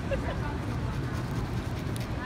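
City street ambience: a steady low traffic rumble with faint, indistinct voices.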